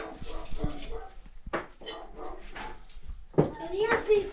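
A dog giving a few short barks and whines, with light clicks and knocks.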